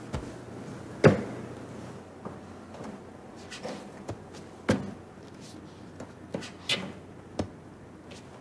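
Slow, uneven footsteps and knocks of a patient climbing wooden rehabilitation training stairs while gripping the handrail. About five sharp knocks at irregular gaps, the loudest about a second in.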